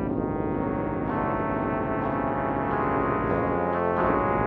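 Trumpet and piano playing slow, sustained notes, with a change of notes about a second in and again near the end.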